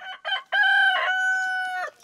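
Rooster crowing once: a couple of short notes, then one long held note that stops just before the music comes back in.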